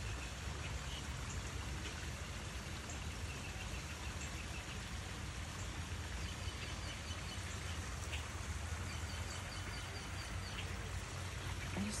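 Small stream flowing steadily over stones, with faint high chirps repeating in the background.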